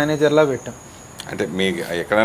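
A man talking in short phrases with a brief pause in the middle, over a faint steady high-pitched tone.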